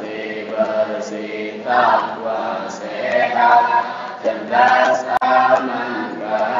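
Voices chanting together in long, held melodic phrases: a religious chant sung in unison.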